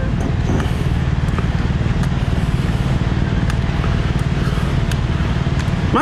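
A steady, low rumble of outdoor noise on a phone's microphone, with a few faint clicks.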